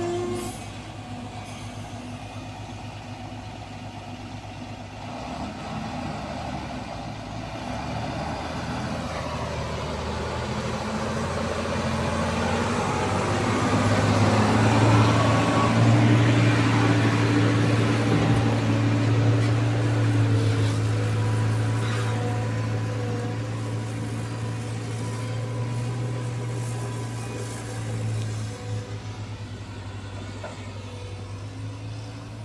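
A diesel dump truck drives slowly past close by, its engine rising in loudness to a peak about halfway through and then fading. Under it, a Caterpillar tracked excavator's diesel engine runs steadily.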